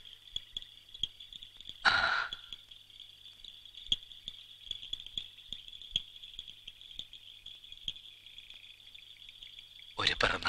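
Steady high-pitched chirring of crickets in a night ambience, with a faint low hum under it. About two seconds in there is a brief, louder rush of breathy noise.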